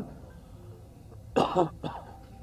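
A person coughs twice: a louder cough about one and a half seconds in, then a short one right after, over low background murmur.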